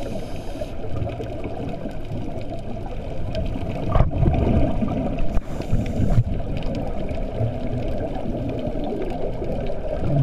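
Muffled, steady underwater rumble heard through a camera's waterproof housing. It gets louder for about two seconds, starting about four seconds in, with a few short knocks.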